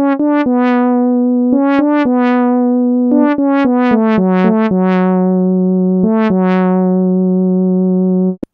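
Monophonic sawtooth synth lead playing a short melody: a run of quick notes and then longer held ones, ending on a long low note. Each note swells brighter and then mellows, a 'wow' sweep from a filter envelope with a slow attack.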